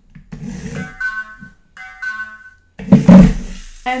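Intelino smart toy train running over white-and-red colour-code strips on a wooden track and playing electronic sound effects from its speaker: two steady tones, each under a second. A louder, noisier sound follows about three seconds in.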